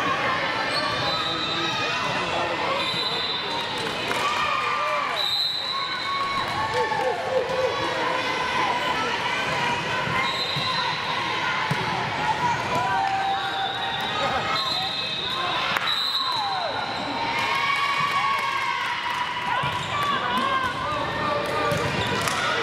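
Sports-hall ambience during a volleyball rally: voices of players and spectators carry on throughout, with the volleyball being struck and a few sharp knocks ringing in the big room. Several short, high, whistle-like tones sound through it.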